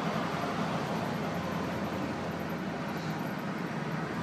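Steady road and engine noise heard from inside a moving vehicle as it drives along a street.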